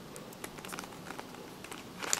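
Faint plastic clicking of a Fisher Cube's layers being twisted by hand: a scattered run of small clicks as the moves of a middle-layer edge-insertion algorithm are turned.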